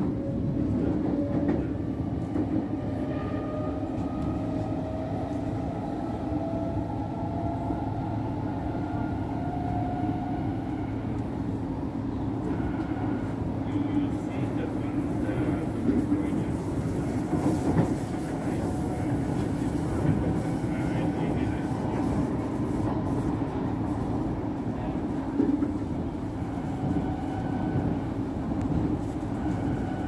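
Singapore MRT train in motion, heard from on board: a steady rumble of wheels and running noise, with an electric motor whine rising in pitch over the first ten seconds or so as the train gathers speed, then holding.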